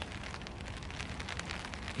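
Rain falling on a tarp overhead: a steady hiss with many small, irregular drop ticks.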